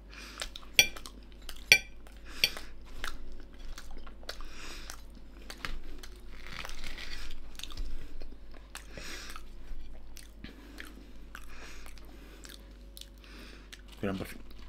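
A person chewing mouthfuls of oven-baked potato balls, with soft, uneven mouth and crunching noises. Two sharp metallic clinks of cutlery on the plate come about a second in.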